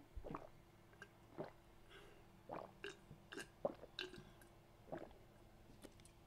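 A man gulping water from a bottle close to a microphone: a dozen or so faint, irregular swallows, about two a second, as he drinks long because he is parched.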